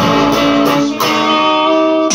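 Electric guitar strummed twice, about a second apart, each chord left ringing.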